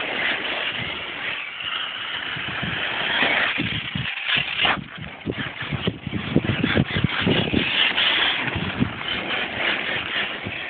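HPI Savage Flux HP, a brushless electric RC monster truck, driving over loose gravel and dirt: a steady noisy rush that drops briefly about four seconds in, then comes back with many uneven louder bursts.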